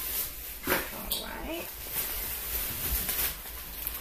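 Plastic shopping bag rustling and crinkling as items are handled and pulled out, with a sharp crinkle about a second in. A faint, short pitched call sounds in the background soon after.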